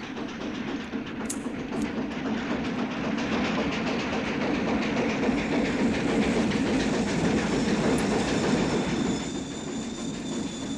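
Steam train rolling into the station, its rumble and wheel clatter growing steadily louder. Near the end a high, steady wheel squeal sets in as it slows.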